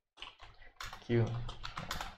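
Computer keyboard being typed on: quick, irregular runs of key clicks as code is entered.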